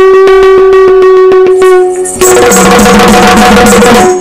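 Yakshagana background ensemble playing for the dance: a steady harmonium drone under rapid, even drum strokes on the maddale. About halfway through, the drumming turns denser and noisier.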